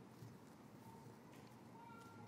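Near silence: church room tone with a few faint, brief small sounds.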